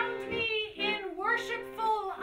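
A woman singing a melody whose pitch bends from note to note, over steady low accordion tones.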